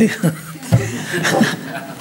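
A man and a woman chuckling and laughing together in short, broken bursts.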